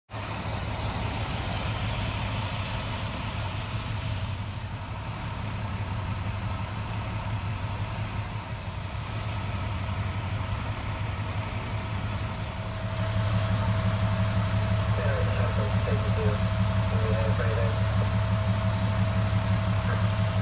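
Diesel engines of parked fire trucks idling steadily, a low rumble with a faint steady whine above it, growing louder about thirteen seconds in. A hiss over the first four seconds and faint voices in the background.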